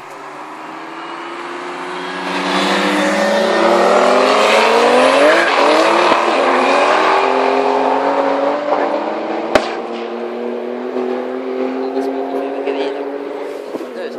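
A Ford and a BMW launching side by side in a drag race, their engines climbing in pitch and loudness as they accelerate hard, loudest about four to six seconds in, then settling to a steadier, fainter drone as they run away down the strip. A single sharp click about nine and a half seconds in.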